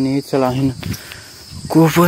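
A young man's voice in short, even, level-pitched syllables with no clear words, breaking off for about a second in the middle and starting again near the end. A steady high insect drone runs beneath.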